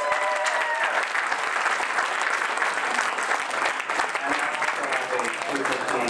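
Audience applauding, with one voice giving a long, held cheer in the first second. Talking starts under the applause near the end.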